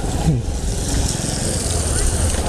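Road traffic: a motor vehicle's engine running close by, a steady low rumble. A brief voice sound cuts in about a quarter second in.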